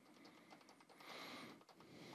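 Near silence with faint, rapid clicking from a computer mouse as symbols are selected and scrolled through.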